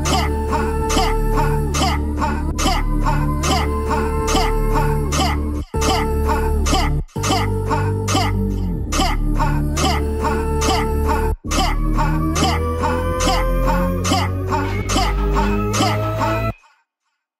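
A 140 BPM dubstep track playing back from the session, with heavy sub-bass, a regular drum pattern and sustained, sliding synth tones. The sound cuts out briefly three times, about a third of the way in, just after that, and about two-thirds in. A sliding tone rises near the end.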